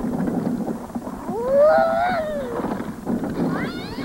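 A cat meowing: one long meow that rises and falls over about a second and a half, then a second meow starting with a steep upward slide near the end.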